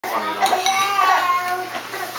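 A young child's high, drawn-out voice making wordless sounds, with a couple of light clicks of a spoon in a plastic bowl.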